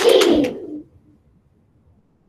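A class of children's voices cheering together over a video call, fading out within the first second, then near silence.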